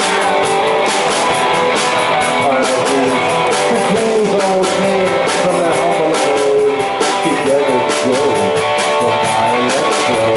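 Live band playing: electric guitar over bass guitar and drums, with regular drum and cymbal hits.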